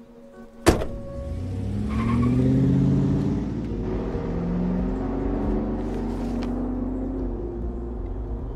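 A sharp thunk about a second in, like a car door shutting, then a car engine running and accelerating, its pitch rising and falling several times as it pulls away.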